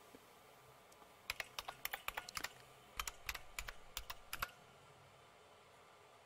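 Computer keyboard keys tapped in two quick runs, the first about a second in and the second ending halfway through, as a short password is typed and Enter is pressed.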